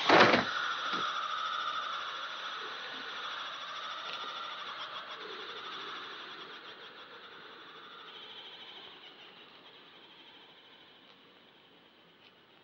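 A sharp fight-impact sound effect at the very start, the last of a run of blows. It is followed by a steady hiss with a thin high edge that slowly fades out.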